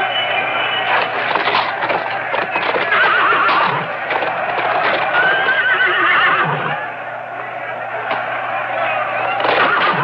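Horses whinnying over the clatter of hooves, with two long wavering whinnies, one about three seconds in and one around five to six seconds in.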